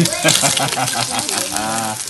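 Rainbow trout fillets sizzling in oil in a frying pan, a steady hiss, with people's voices over it.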